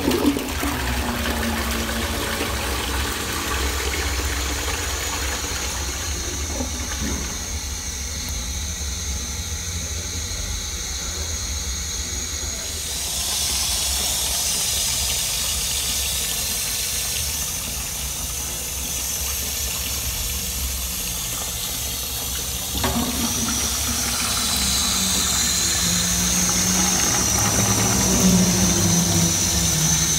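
Toilet flushing, water rushing into the bowl, then the cistern refilling: a steady hiss of water through the float-arm fill valve. The hiss grows brighter about 13 seconds in, and a low steady tone joins it about two-thirds of the way through.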